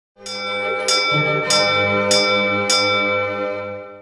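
Bell struck five times, about every 0.6 seconds, as the opening sound of a TV channel's ident. Its tones ring on and overlap, fading toward the end.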